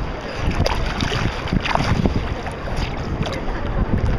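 Wind rumbling on the microphone over lapping water, with a few brief clicks or small splashes.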